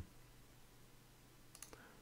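Near silence: room tone, with a few faint clicks about one and a half seconds in.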